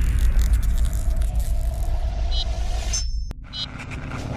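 Cinematic logo-intro sound effect: a deep rumble trailing off from an opening hit, with crackling sparkle on top. It drops out briefly about three seconds in with a sharp click, then swells again.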